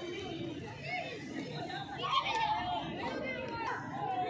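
Several men's voices talking over one another in overlapping, indistinct chatter.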